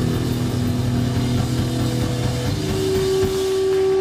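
Distorted electric guitar and bass through stacked amplifiers, holding low droning notes with no drums. About two and a half seconds in, a single loud guitar note swells in and rings on, held steady.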